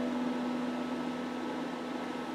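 A single electric guitar note left ringing after a strummed chord, slowly fading over steady amplifier hiss.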